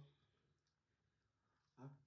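Near silence: room tone, with a faint click about half a second in.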